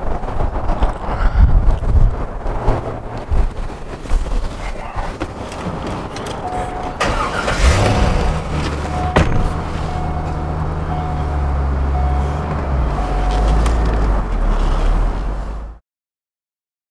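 Chevrolet C5 Corvette's LS1 V8, fitted with an SLP exhaust, starting about halfway through and settling into a steady idle, while a warning chime beeps about once a second. Before the start there are low rumbles and a few knocks, and the sound cuts off suddenly near the end.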